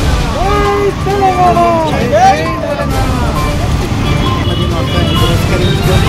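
A group of men shouting slogans together, loud calls rising and falling in pitch through the first half. Under them runs a steady low rumble.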